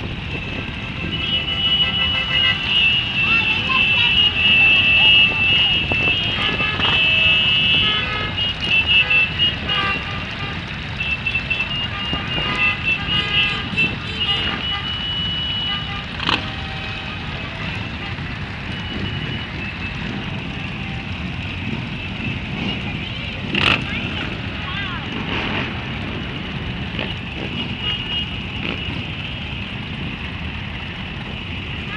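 A large pack of motorcycles idling together in a steady low rumble, with many horns tooting over one another through roughly the first half. Two sharp bangs stand out later on.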